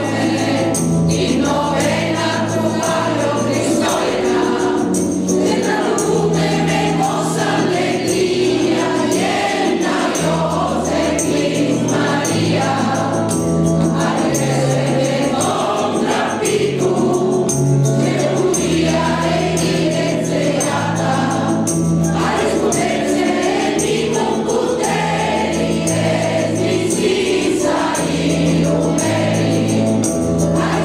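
Mixed choir of men and women singing a Christmas song over a recorded backing track, whose low bass notes change about once a second in a steady pattern.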